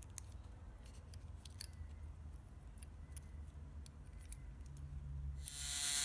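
Faint small clicks and taps of plastic and metal as a model locomotive's can motor is eased out of its chassis by hand. Near the end the removed motor starts running on the bench with a steady whir; it draws about half an amp and runs rough, the sign of the worn-out original motor.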